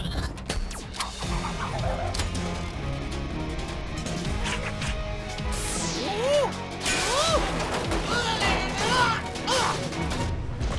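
Cartoon fight soundtrack: action music under a string of crash and impact sound effects, with a falling whistle about halfway and several short squeaky tones that rise and fall in the last few seconds.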